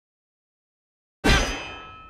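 A single loud metallic clang about a second in, its several ringing tones dying away over the following second.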